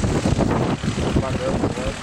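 Racing kart engines buzzing as the karts run round the track, with spectators talking.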